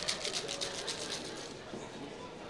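Ice and salt slush rattling inside a shaken Freezeez toy ice cream maker, a quick, even rattle that fades out about a second in.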